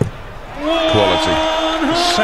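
A single sharp thud of a steel-tip dart striking the dartboard, followed from about half a second in by a loud, drawn-out voice with long held notes.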